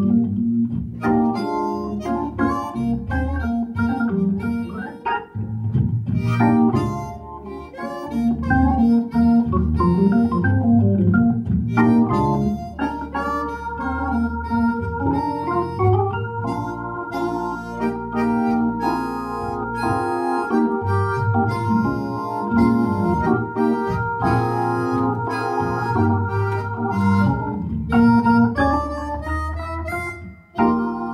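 Hammond New B3 digital organ and a chromatic harmonica playing a slow, funky, bluesy tune together.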